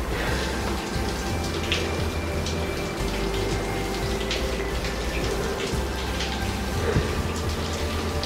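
Water from Staubbach Falls splashing and dripping onto wet rock, a steady rush with a few sharp drips, under soft background music with long held notes.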